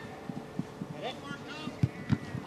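Faint shouting from players across an outdoor football pitch, with a dull thump near the end.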